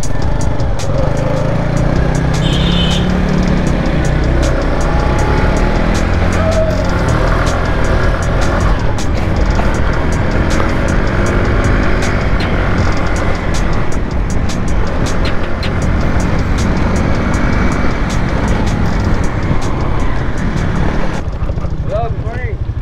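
Motorbike riding along a road: a small engine running under steady road and wind noise.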